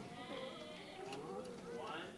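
Indistinct voices of a crowd talking at once, with overlapping, wavering pitches and no clear words.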